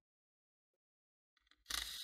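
Dead silence, then near the end a short whir, about half a second, from an electric screwdriver backing out the Wi-Fi card's screw.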